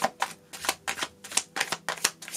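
Tarot cards being shuffled or handled by hand: a series of short, crisp card clicks at irregular spacing, several a second.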